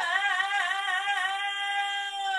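A woman singing unaccompanied, holding one long high note with a slight waver in pitch.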